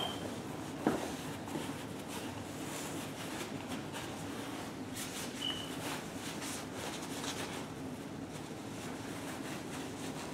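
Quiet handling sounds as the harness straps of an Evenflo infant car seat are fastened, with a sharp click about a second in, over a steady low hum.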